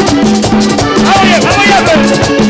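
Live vallenato band playing at full volume, with accordion, electric bass, congas and percussion on a steady, quick beat. About a second in, a voice slides up and down over the band for about a second.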